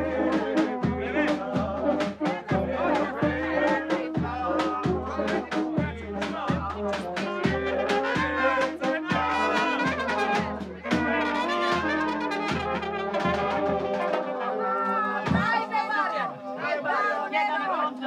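Brass band music with a steady low beat that stops about fourteen seconds in, while the horns play on, over crowd chatter.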